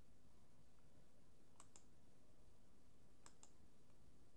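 Near silence with a faint low hum, broken by two quick double clicks, the second pair about a second and a half after the first.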